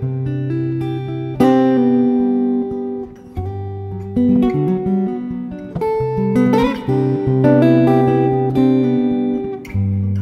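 Background music: an acoustic guitar piece with plucked notes and chords over low held notes.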